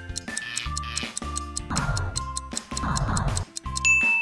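Quiz countdown timer sound effect: fast, even clock-like ticking over light background music, with a high beep starting just before the end as the timer runs out.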